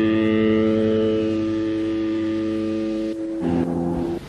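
A distorted electric guitar chord held and ringing out at the close of a black metal track, fading slowly. Just after three seconds in it gives way to a lower held chord that stops abruptly.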